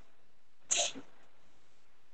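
A single short, sharp burst of breathy, hiss-like noise a little under a second in, over a faint steady background hiss.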